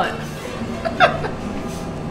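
A woman laughing in short bursts, the sharpest about a second in, over quiet background music.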